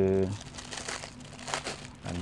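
Clear plastic wrapping crinkling irregularly as hands handle the waterproof phone-holder bag inside it.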